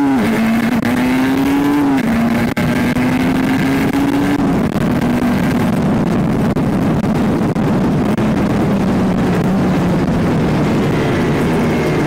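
Two-stroke sport motorcycle engine heard from on board, accelerating with a couple of quick upshifts in the first four seconds, then cruising with its pitch slowly sinking, under steady wind rush.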